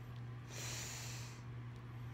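A person breathing out through the nose once, a soft rush lasting about a second, heard over a steady low hum.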